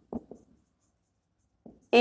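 Marker pen writing on a whiteboard: a few short, faint strokes, most of them in the first half second.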